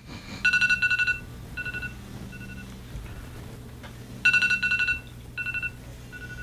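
A smartphone's electronic alert tone going off: a fast trill of beeps followed by two or three shorter, fading beeps, the pattern repeating about every four seconds.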